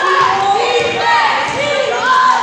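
A basketball bouncing on a hardwood gym floor about twice a second, under overlapping shouting voices, all echoing in a large gym.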